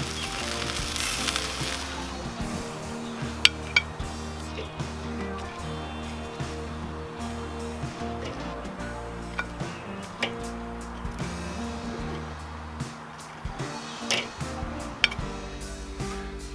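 Background music with a steady bass line over chicken wings sizzling on a charcoal grill. A few sharp metallic clicks come from tongs against the grill grate.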